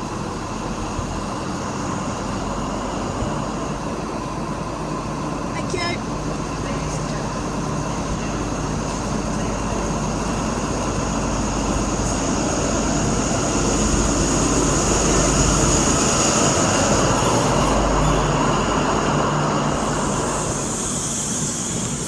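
InterCity 125 (Class 43) diesel power car pulling out and accelerating past, its engine and running noise building to a peak about two-thirds of the way in. A steady high whine rises and falls with it, and the coaches then rumble by on the rails.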